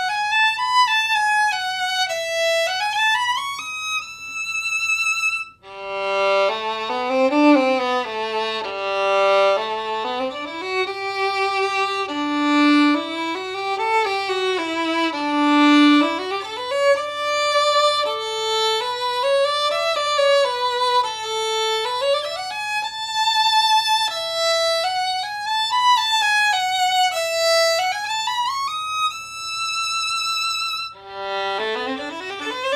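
Solo violin playing a bowed melody with vibrato, heard on two violins in turn: a Holstein Traditional Red Mendelssohn and a Fiddlerman Soloist, both strung with Thomastik PI strings. About five seconds in, the melody breaks off briefly and starts again in a lower register.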